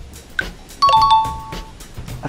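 Countdown-timer sound effect: a tick, then about a second in a loud two-tone ding-dong chime, a higher note followed by a lower one, ringing for most of a second to mark the end of a five-second countdown.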